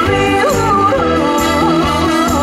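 A woman singing a trot song live with a band: a wavering, ornamented vocal line over a steady beat.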